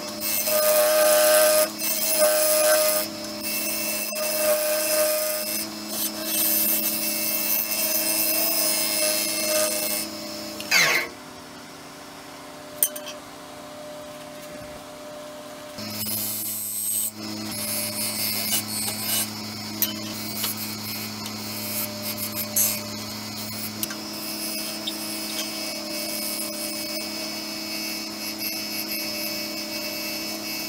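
Turning tool cutting the spinning madrone bottom of a wood-and-resin bowl on a wood lathe, a scraping cut over the steady hum of the lathe. The cutting stops about ten seconds in, leaving only the hum for a few seconds, and starts again near the middle.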